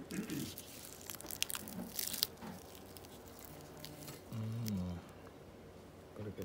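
Charred skin of a roasted sweet potato crackling and tearing as it is pulled apart by hand, a run of sharp crackles in the first couple of seconds. A person hums a short "mm" a little past the middle.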